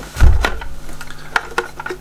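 Hard plastic toy shell being handled: a low thump a fraction of a second in, then a scatter of light plastic clicks and taps as it is turned in the hands.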